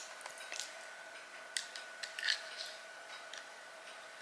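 A few faint metallic clicks and scrapes of a small screwdriver tip working against a small screw that will not come loose.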